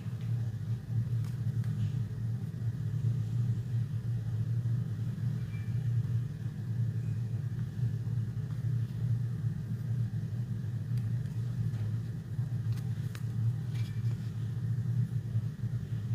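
A steady low rumble dominates throughout, with a few faint clicks from a phone in a clear plastic case being handled.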